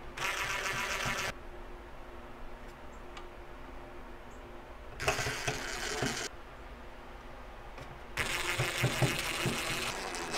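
Cordless drill-driver running in three short bursts, the last the longest, driving the small mounting screws of a NAS's cooling fan.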